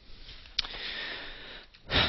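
The speaker's breath between sentences: a small click, then a soft hissing inhalation lasting about a second, and a short, louder breath near the end.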